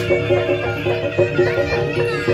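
Live jaranan gamelan music: a repeating pattern of struck metallophone notes over drum beats, with a reedy wind-instrument melody wavering above it.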